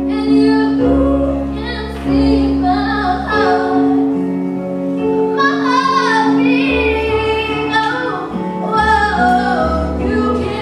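A female vocalist singing a slow song live over backing music of held keyboard-like chords and a low bass.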